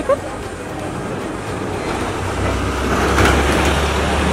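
Street traffic: a vehicle passing close by, its rumble and road noise building from about a second in and loudest about three seconds in.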